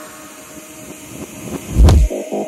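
Future bass track in a quiet breakdown: sustained synth tones under a hissing noise that swells, then one loud deep bass hit near the end that leads into the drop.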